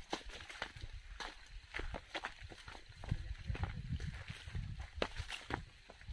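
Footsteps walking along a rough forest trail, about two steps a second, with a low rumble on the phone's microphone.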